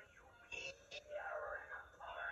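A cartoon character's voice without clear words, played from a television's speakers and picked up in the room.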